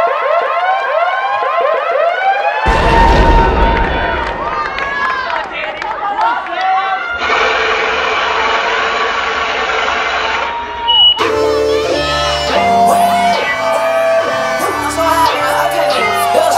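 Crowd cheering, whooping and applauding. About three seconds in, dance music over the sound system comes in with heavy bass, and from about eleven seconds a hip hop beat with repeating bass notes plays under the crowd.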